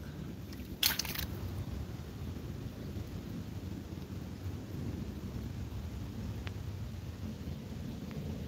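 Steady low rush of a shallow brook flowing, with a brief rustle about a second in.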